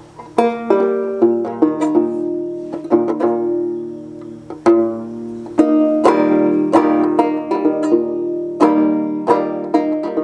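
A fretless East Kentucky-style hexagonal mountain banjo with a hide head over a wooden sound chamber, played solo: sharp plucked notes ringing over held lower tones, in an uneven rhythm of strokes.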